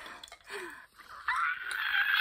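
A woman's high-pitched shriek begins a little over a second in and is held with a wavering pitch, after a quieter first second.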